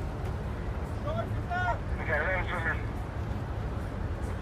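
Steady low rumble from the boats' engines, with brief voices calling out about a second in and again around two seconds in.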